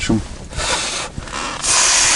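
Two short bursts of hissing, rustling noise, the second louder and lasting about half a second near the end.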